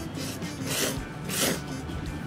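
A person slurping thick ramen noodles: two loud slurps in quick succession, the second the loudest.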